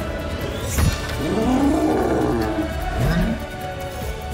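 A thud about a second in, then a long drawn-out yell that rises and falls in pitch, with a shorter cry near the end, over orchestral film music.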